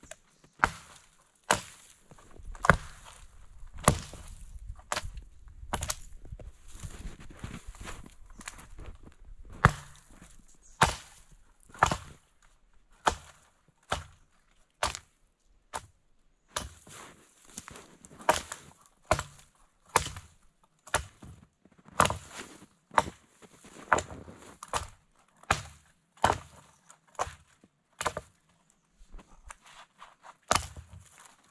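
Axe chopping the branches off a freshly felled small tree, sharp strikes roughly one a second, with rustling and cracking of branches between strokes in the first several seconds and a short pause about halfway through.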